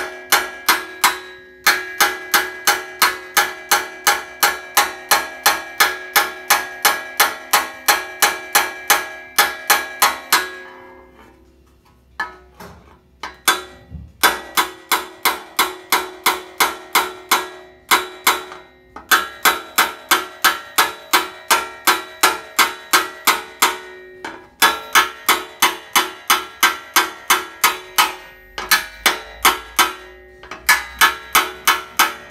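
Hand hammer striking the flange of an 18-gauge steel patch panel, about four ringing blows a second in long runs with a few short pauses. The blows pull the metal down, moving material into the flange as it is folded over.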